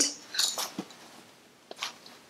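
A few faint taps and short scrapes as a white cardboard box is handled and lifted in the hands.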